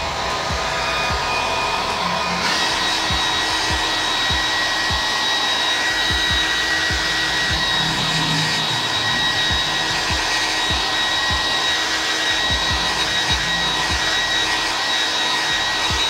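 Handheld hair dryer blowing hot air steadily, heating the scooter's panel surface so the 3M adhesive tape will bond. Its motor whine steps up in pitch about two and a half seconds in, and the airflow buffets the microphone with irregular low thumps.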